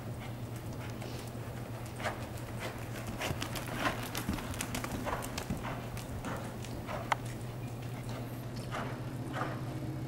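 Paint mare's hooves falling at a walk on the dirt footing of an indoor arena, in an uneven series of soft strikes, over a steady low hum.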